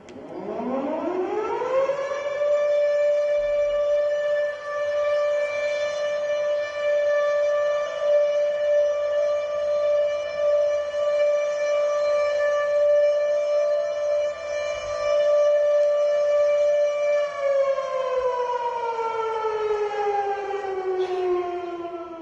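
Memorial siren sounded for Yom Hazikaron, a single steady civil-defence-style siren tone marking the moment of silence for fallen soldiers and victims of terror. It winds up over about two seconds, holds one pitch for most of its length, then winds slowly down over the last few seconds.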